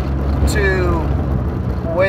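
Steady low rumble of a small car's engine and road noise heard from inside the cabin while driving. A man's voice sounds once, briefly, in one drawn-out sound that falls in pitch about half a second in.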